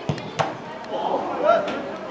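Two sharp slaps of a volleyball being hit, about a third of a second apart, followed by a shout.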